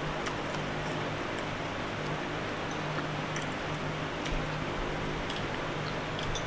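Metal spoon and fork on a ceramic plate: a few faint, scattered clicks over a steady low hum and room hiss.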